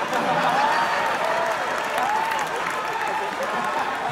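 Audience applauding steadily, with a few voices rising and falling over the clapping.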